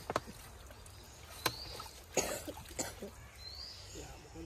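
Hands splashing and scooping in shallow muddy water inside a drag net as small fish are picked out, with a few sharp splashes and slaps. A short rising bird chirp repeats about every two seconds in the background.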